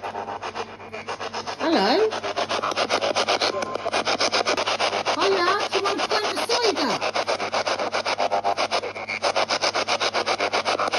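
Spirit box, a small portable FM radio sweeping the band, putting out static chopped many times a second as it steps from station to station. Short pitched, voice-like snatches of broadcast come through about two seconds in and again around five to seven seconds.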